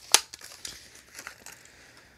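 Cardboard toy-car packaging being handled and pulled open: a sharp crack just after the start, then a run of fainter crinkles and clicks that die away.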